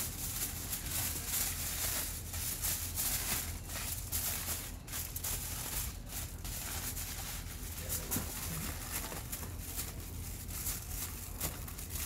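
Aluminium foil crinkling and rustling in irregular crackles as it is folded and wrapped around roast meat by gloved hands.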